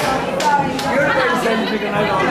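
Several people's voices talking over one another at once: lively overlapping chatter in a small crowded room.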